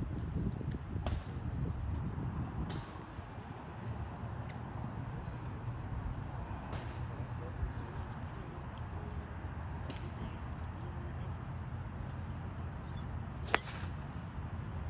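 A golf driver striking a ball off the tee: one sharp, loud crack about a second before the end, over a steady low rumble, with a few much fainter clicks earlier.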